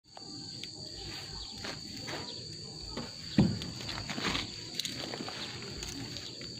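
Steady high-pitched drone of insects, with scattered soft knocks and one much louder low thump a little past halfway.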